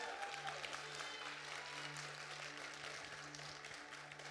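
Faint applause from a small congregation, slowly dying away, over a low steady tone.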